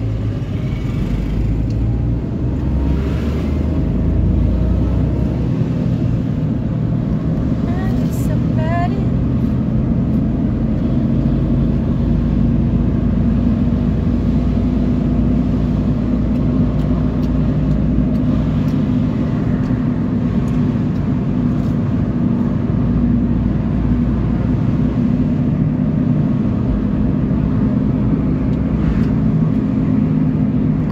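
Car cabin noise while driving: a steady low road and engine rumble heard from inside the car.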